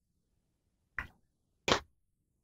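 Near silence from a gated microphone, broken by two short breathy sounds from a host's laugh, one about a second in and one near the end.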